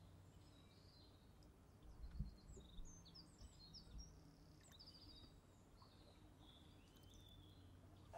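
Near silence: faint ambient noise with a scatter of short, high bird chirps, most of them in the first half.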